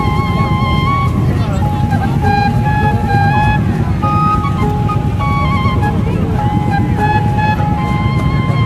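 Loud procession music played through a speaker stack with horn loudspeakers: a high melody in held notes that step up and down, over a heavy, dense bass, with crowd noise mixed in.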